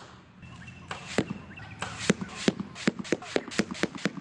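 A rapid, irregular series of about a dozen sharp thuds and clicks: arrows striking a foam 3D boar target one after another.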